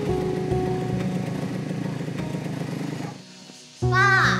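Soft background music over a Suzuki motorcycle's engine idling; both drop away suddenly about three seconds in.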